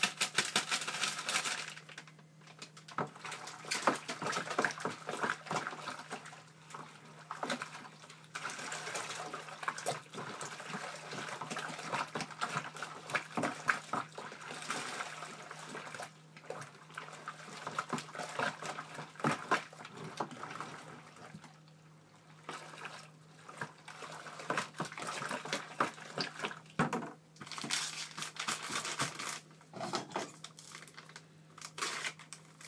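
Water being stirred by hand, swishing with many irregular knocks and scrapes, as beer enhancer is mixed into hot water to dissolve the clumps. A steady low hum runs underneath.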